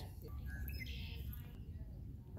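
Faint chirping of birds over a low, steady rumble.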